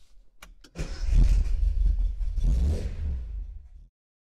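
Car engine starting and revving: a few clicks, then the engine catches about a second in and swells twice before cutting off abruptly near the end.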